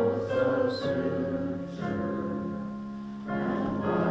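Congregation singing a hymn together with piano accompaniment, including a long held chord before the singing fills out again near the end.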